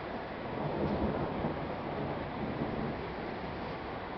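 Rolling thunder from a storm: a low rumble that swells about half a second in and slowly dies away, over steady background noise.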